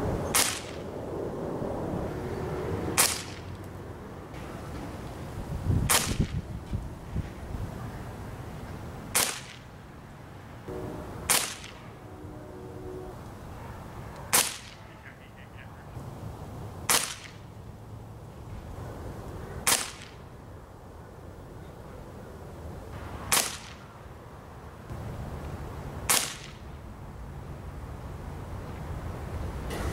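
A .177 Gamo Swarm Maxxim break-barrel pellet rifle firing ten shots, one sharp crack every three seconds or so, the rifle recocked between shots to feed the next pellet from its 10-shot magazine.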